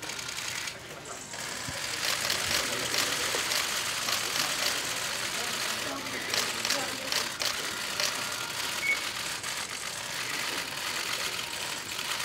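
Dense, rapid clicking of many press camera shutters firing in bursts, over a low hubbub of voices.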